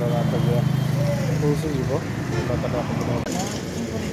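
Voices talking over a steady low hum of a vehicle engine running, which fades about halfway through.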